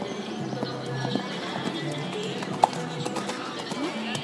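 Music playing, with a horse's cantering hoofbeats on sand footing and one sharp knock about two-thirds of the way through.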